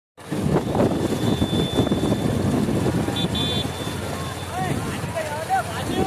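Several motorcycle engines running close by, with voices calling out over them.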